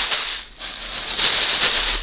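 Tissue paper rustling and crinkling as it is pulled out of a gift bag, with a brief lull about half a second in.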